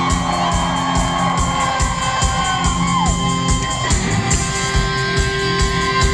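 A live punk rock band playing: electric guitar and bass over drums keeping a steady beat, with held guitar notes ringing.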